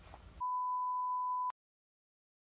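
A single steady electronic beep, one pure tone about a second long, starting about half a second in and cut off abruptly with a click.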